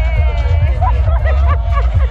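Live music through a large outdoor concert sound system: heavy bass with a lead voice over it, holding one long note and then moving through a wavering line, with crowd chatter around.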